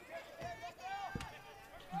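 Faint, distant voices, like players or spectators calling out across a soccer pitch, with one dull knock a little after a second in.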